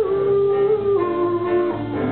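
Acoustic guitar strummed live, with a held melody line above it that steps up and down in pitch.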